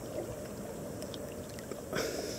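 Water sloshing around a submerged camera as a person swims: a steady, muffled rush with a few faint clicks, and a brief louder splash right at the end.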